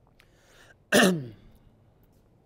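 A man coughs once, a short, sudden cough about a second in whose voiced tail falls in pitch.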